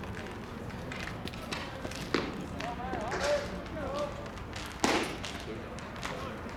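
A single sharp pop of a baseball smacking into the catcher's mitt about five seconds in, after a pitch. Before it, players' shouted chatter carries across the field.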